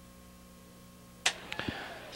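Low, steady electrical hum, then a single sharp click a little over a second in, after which the hiss rises and two faint clicks follow: the sound of the announcer's public-address microphone being switched on.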